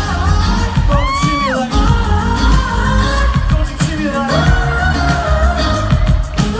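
Live pop band with amplified drums, bass and keyboards, and a male lead vocal; about a second in the singer holds a note that bends up and then drops away.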